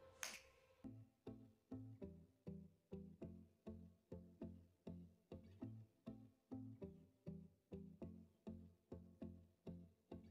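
Faint background music: low plucked notes in a steady rhythm of about two and a half a second.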